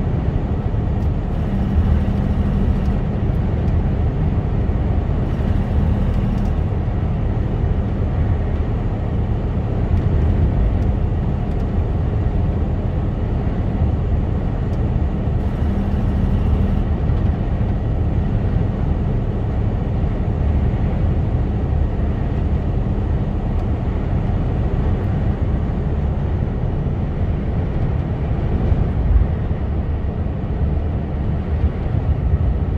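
Inside the cab of a Mercedes-Benz Actros lorry cruising at road speed: a steady low drone from the diesel engine mixed with road noise.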